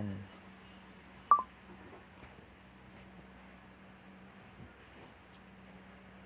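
A single sharp click with a brief ringing tone about a second in, as a stripped jumper wire is pushed into a plastic wall outlet's terminal with pliers; otherwise only a faint steady low hum.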